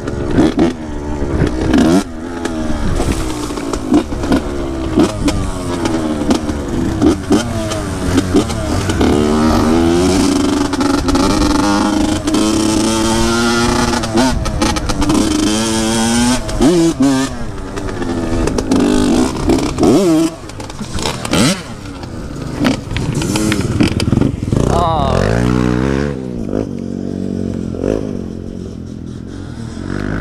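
Honda CR85 two-stroke dirt bike engine being ridden, its pitch rising and falling over and over as the throttle is worked and gears change. It settles to a lower, steadier idle near the end.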